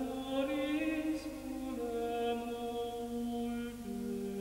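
Background music: a slow sung chant with long held notes that step to new pitches every second or so.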